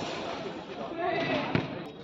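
A basketball bouncing twice on a hard outdoor court, a sharp bounce at the start and a fainter one about a second and a half in, with players' voices calling out in the background.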